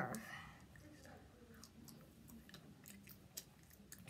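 Faint chewing of gum: soft, irregular wet mouth clicks and smacks.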